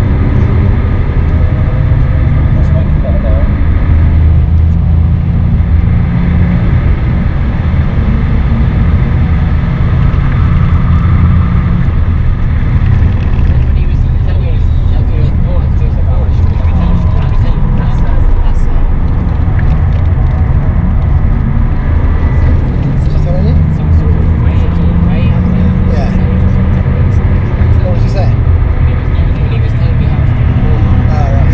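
BMW 530d's straight-six turbodiesel engine pulling hard, heard from inside the cabin over road and tyre noise; the engine note rises and falls repeatedly with throttle and gear changes.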